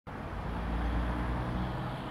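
Low, steady hum of a motor vehicle's engine running nearby, over a faint noise bed.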